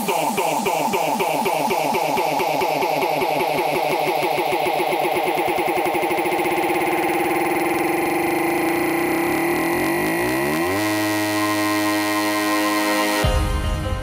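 Hardstyle music in a breakdown: the kick drum drops out and a rapid run of repeating synth notes sweeps in pitch. About eleven seconds in it settles into held synth chords, and the full beat crashes back in near the end.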